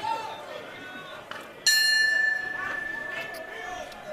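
Boxing ring bell struck once about a second and a half in to start round four, a sharp clang whose high ringing tone fades slowly. Arena crowd voices and chatter carry on underneath.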